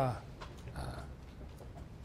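A pause in a man's speech: his word trails off at the start, leaving low background room noise with faint scattered clicks.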